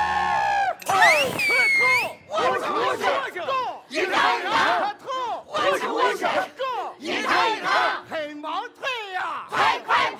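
The Shaanxi Laoqiang opera ensemble shouting together in chorus, in short rhythmic bursts about once a second. A single high rising cry comes about a second in.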